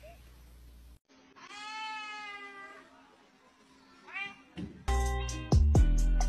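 A pet animal's drawn-out call, falling slightly in pitch, about a second in, and a short rising call about four seconds in. Then loud music with a heavy regular beat starts near five seconds.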